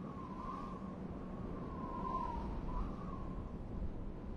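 A bird calling three times, each call a drawn-out note that wavers up and down, over a steady low background rumble.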